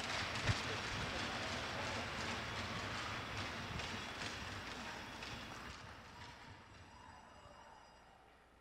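Audience applauding, the clapping tapering off over the last three seconds.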